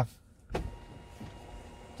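A click, then the small electric motor of the Toyota Estima's panoramic glass-roof cover running with a faint, steady whine as the cover slides closed.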